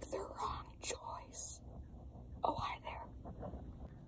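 A person whispering in short, breathy bursts, in the first second and a half and again around two and a half seconds in.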